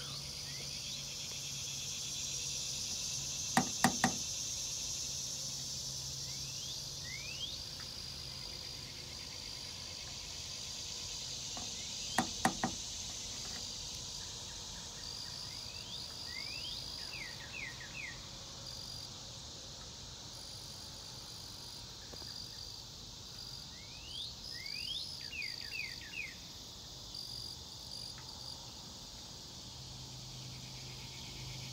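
Steady outdoor insect chorus, a high-pitched hiss, with short rising chirps here and there. Two quick sets of three sharp clicks, about 4 seconds in and again about 12 seconds in, stand out above it.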